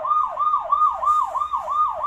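Electronic siren of a children's battery-powered ride-on police motorcycle, playing from the toy's own speaker: a fast repeating wail of about four falling sweeps a second.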